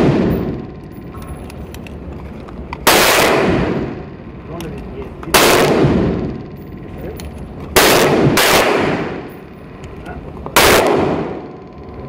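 Taurus PT111 G2 9mm pistol fired five times at a slow, even pace, about two and a half seconds apart, with two shots close together near the middle. Each shot rings and echoes in an indoor shooting range.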